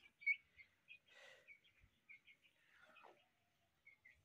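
Aseel chicks peeping faintly, a quick run of short high chirps, with two brief scratchy noises about one and three seconds in.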